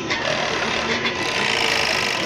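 Hercules HE360-5 five-thread industrial overlock machine running and stitching a test seam through lycra, a steady dense whirr that grows a little louder in the second half.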